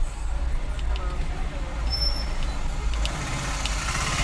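Low, steady rumble of a car's engine and road noise heard from inside the cabin as the car crawls along a street, with faint voices from outside.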